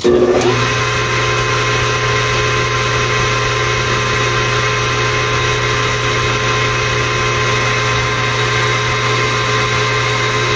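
Metal lathe starting up just after the start and running at a steady speed: a constant motor hum with several steady whining tones from the drive. The chuck turns a workpiece against a rounded form tool.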